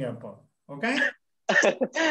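A man's voice trailing off, then a short vocal sound and a run of quick, broken voiced bursts as he starts to laugh.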